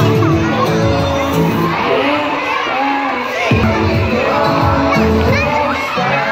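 A crowd of children chattering and shouting over loud background music with sustained low notes.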